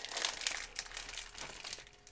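A small clear plastic sachet of Ecoegg mineral pellets crinkling as it is squeezed and tipped out into the egg's plastic shell, a dense run of crackles that thins out toward the end.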